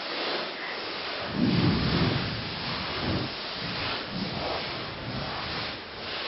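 Tall grass rustling and brushing against a hand-held camera pushed through it, a steady hiss with irregular low rumbling thumps on the microphone, heaviest about one and a half seconds in.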